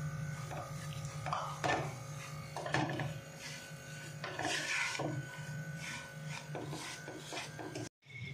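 Wooden spatula stirring and scraping a dry, crumbly roasted-chickpea panjeri mixture in a non-stick wok, in repeated short scrapes, over a steady low hum.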